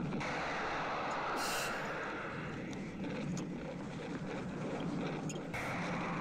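Film soundtrack of a spaceship exploding: a dense, sustained blast noise with no single sharp crack.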